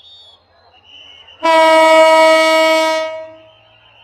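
Diesel locomotive horn giving one loud blast of about two seconds, starting suddenly about a second and a half in and fading away near three and a half seconds.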